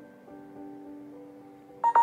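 Quiet background music of soft held notes. Near the end a short, bright electronic chime cuts in.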